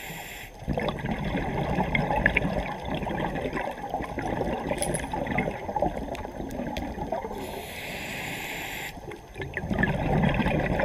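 Scuba diver breathing through a regulator underwater: a brief hiss of inhalation, then several seconds of bubbling exhaust as the diver breathes out, a second hissing inhalation near the end, and bubbling starting again.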